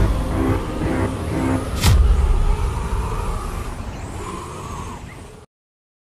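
Trailer sound design. A low held musical drone ends in a single deep boom about two seconds in. A rushing storm wind then fades and cuts off suddenly before the end.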